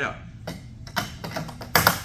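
Sterile handle being pushed onto the centre mount of a Dr. Mach surgical light head: a series of short, light clicks and taps, the loudest cluster near the end.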